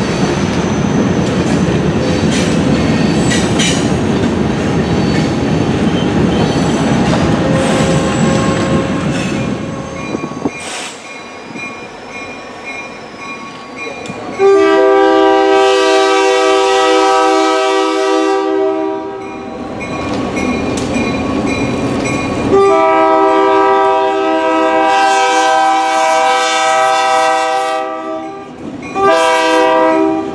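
Diesel freight locomotives rumbling past, with thin high squeals from steel wheels on the rails. After a quieter stretch, a locomotive air horn sounds a chord of several notes: two long blasts, then shorter ones near the end.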